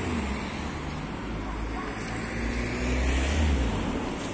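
Low rumble of motor traffic in a city street, swelling to its loudest about three seconds in, then easing off.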